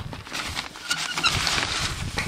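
Footsteps crunching on gravel, with a jacket rustling against the microphone as the camera moves; a run of irregular, uneven crunches and scuffs.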